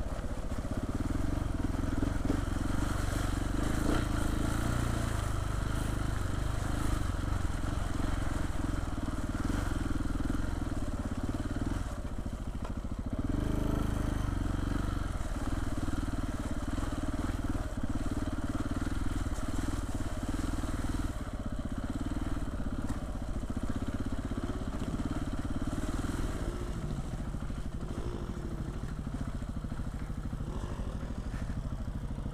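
Off-road trail motorcycle engine running at low speed as the bike rides along a muddy, rutted track, heard close up from on the bike. The engine note eases off briefly about twelve seconds in, then picks up again.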